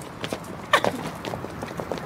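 Shoe heels clicking on a concrete sidewalk as a woman walks and spins: a few irregular steps, the loudest about three-quarters of a second in.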